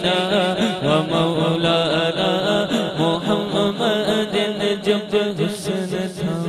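A man singing a naat into a microphone, a long melismatic chanted line of devotional Urdu/Arabic verse.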